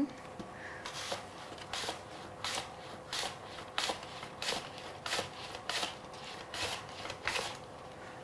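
An apple being sliced on a hand mandoline slicer: a steady run of about ten short scraping strokes, roughly one every two-thirds of a second, each shaving off a thin slice with the skin on.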